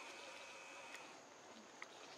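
Faint insect buzz: a steady high tone lasting about a second, over quiet forest ambience, with a couple of light ticks.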